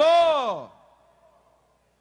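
A man's voice through a microphone drawing out one long word, its pitch rising and then falling before it stops less than a second in.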